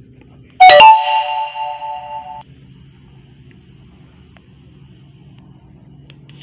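Loud electronic chime from a Samsung Galaxy M10 smartphone as it restarts during a factory reset. It starts suddenly with several tones sounding together, rings and fades for under two seconds, then cuts off abruptly.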